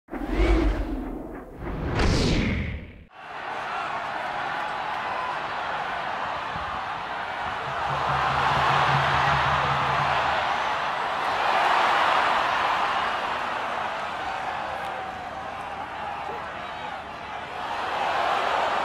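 A short whooshing intro sound effect with a low hit, then steady noise from a rugby stadium crowd. The crowd noise swells twice as the attack builds toward the try line.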